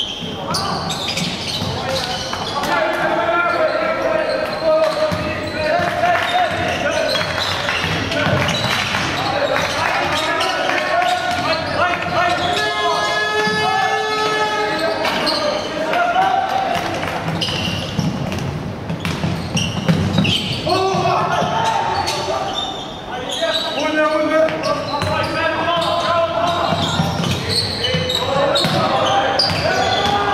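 Live basketball game in a large, mostly empty indoor hall: the ball bounces on the hardwood floor while players and coaches shout and call out. The voices and bounces go on almost without a break.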